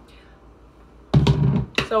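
The blender is off. About a second in there is a heavy thud, and just after it a sharp click, as the Vita-Prep blender's parts are lifted and set down.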